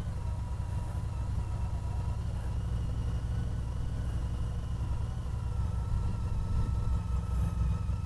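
Honda CTX1300 motorcycle's V4 engine running at low road speed, a steady low rumble mixed with wind buffeting on the microphone.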